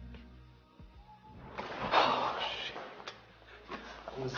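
A sudden, really loud noise about a second and a half in, lasting about a second, with a short click after it.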